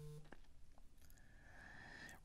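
Near silence: faint room tone, with one faint click near the start.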